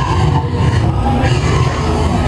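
Theme-park dark ride soundtrack: music playing over a steady low rumble.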